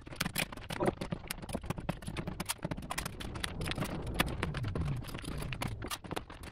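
Plastic door vapour barrier being pulled away from its sticky butyl sealant and handled: dense, irregular crinkling and crackling of the sheet throughout.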